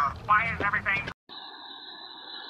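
A voice for about the first second, cut off abruptly. After a brief gap comes a faint, steady hum of a few held tones, unchanging.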